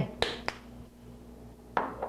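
Two sharp clicks about a quarter second apart from the plastic cap of a spice jar being closed, followed near the end by a short soft breathy sound.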